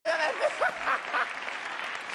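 Studio audience applauding, with a few voices heard over the clapping in the first second or so.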